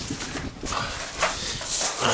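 Hurried footsteps crunching on a gravel path, with a few irregular knocks and scuffs from a hand-held camera being carried at a run.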